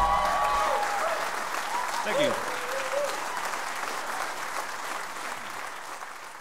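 Audience applauding and cheering just after the last note of a live song, with a few whoops; the applause gradually dies down.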